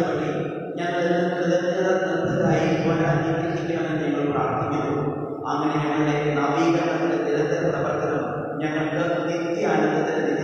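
A priest chanting a liturgical prayer of the Mass in long held notes, breaking briefly between phrases.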